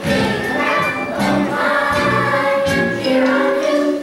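Musical-theatre song: a group of young voices singing together over instrumental accompaniment.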